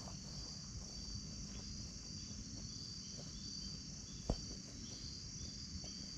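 A steady, high chorus of crickets and other evening insects, with short repeated chirps running through it. A single dull thump comes about four seconds in.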